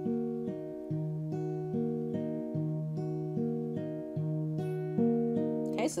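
Crafter acoustic guitar capoed at the sixth fret, fingerpicking an A minor chord in a steady four-note pattern, thumb on alternating bass strings and fingers on the second and third strings, repeated over and over at between two and three notes a second with the notes ringing into each other.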